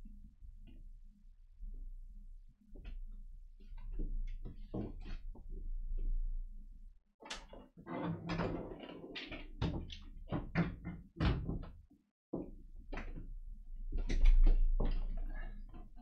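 A person coming back to a desk and settling into a chair: scattered handling sounds, then a quick run of short knocks and thuds in the second half, over a low electrical hum.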